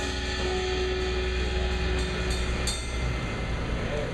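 Live rock band with two drum kits, electric guitars and bass playing loud instrumental music that rings out on sustained notes and cymbals. There is a crash near the middle, and the low bass notes drop away about three seconds in as the piece ends.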